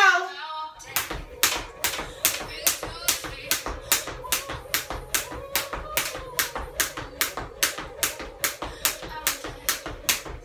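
Hand clapping in a steady rhythm, about three claps a second, starting about a second in.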